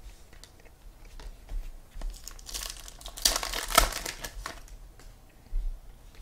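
Trading cards being handled and shuffled in the hands: a stretch of crinkling and rustling in the middle, loudest a little past the halfway point, with light clicks of cards around it.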